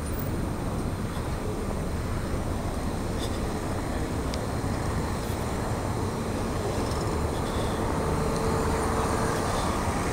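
Steady low rumble of a car moving slowly, heard from inside the car, with a faint hum joining it for a couple of seconds in the second half.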